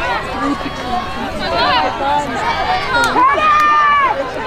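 Several high voices shouting and calling over one another on a lacrosse field. A long held shout begins about three seconds in.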